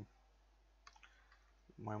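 A few faint, separate keystrokes on a computer keyboard, about a second in, with a man's voice resuming near the end.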